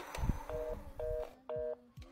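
Three short two-tone telephone beeps on the line, about half a second apart, after a low thump near the start.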